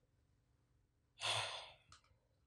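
A man sighing: one short, breathy exhale close to the microphone about a second in, fading out, followed by a faint click.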